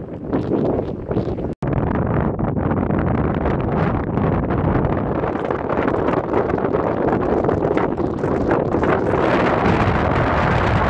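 Wind blowing hard across the microphone, a dense rushing noise with gusty swells. It cuts out for a moment about one and a half seconds in, then carries on.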